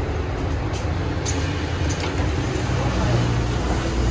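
Mercedes-Benz Citaro city bus idling at a stop, a steady low engine rumble, with a few short sharp clicks in the first two seconds.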